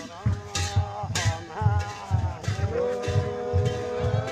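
A dhol drum beaten in a steady pattern of paired beats, about four a second. Jhyamta cymbals clash now and then, and several voices chant over it: Sakewa dance music.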